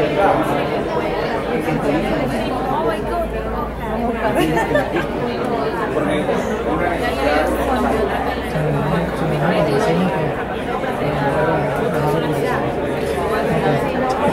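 Many people talking at once in a large room: a steady babble of overlapping conversations with no single voice standing out.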